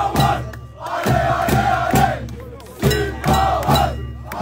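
A group of men chanting a football chant in unison, in sung phrases about a second long, with a steady beat of sharp strokes about twice a second.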